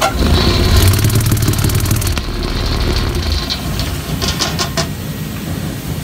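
Deburring tumbler loaded with metal parts being switched on: its motor starts with a low rumble and the parts rattle rapidly inside. The rattle eases after about two seconds, and a few sharp clicks follow near the end.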